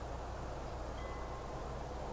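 Steady low hum and hiss of background room tone, with one faint, brief high ringing note about a second in.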